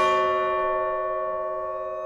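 Orchestral music from a contemporary violin concerto: a held chord of a few steady tones ringing on and slowly fading away.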